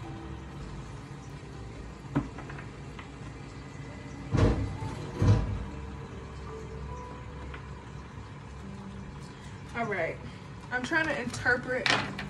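A deck of oracle cards being shuffled by hand, with two louder slaps of the cards about four and a half and five and a half seconds in, over a steady low background hum; a voice starts near the end.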